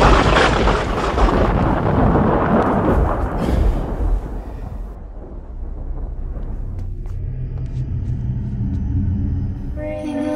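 A sudden loud boom that rumbles and fades away over about five seconds, followed by a low steady drone.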